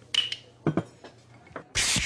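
A few short scraping clicks, then near the end a sudden loud rushing splash of water begins.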